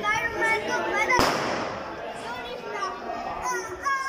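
A single sharp firecracker bang about a second in, with a noisy tail that fades over about a second, among the voices of a group of young men.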